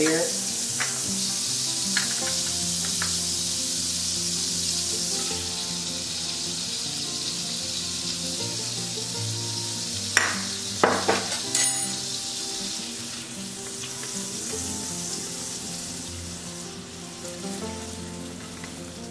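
Butter sizzling steadily as it melts in a cast iron skillet, easing off slightly toward the end. About ten seconds in come a few short knocks as coconut sugar goes into the pan.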